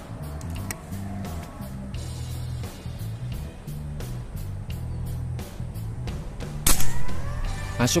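Background music with a steady beat and bass line. About seven seconds in, a single sharp shot from a regulated Predator Tactical 500cc PCP air rifle cuts through it.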